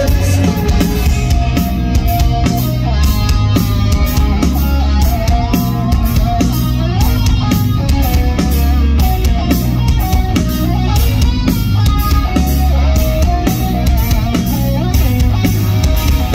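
A rock band playing an instrumental passage live over a festival PA: electric guitars with a melodic line over a steady drum beat, without vocals.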